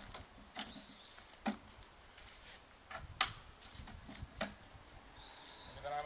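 A handful of separate metal clicks and knocks from the folding wheels and frame of a portable solar panel assembly being handled, the sharpest about three seconds in.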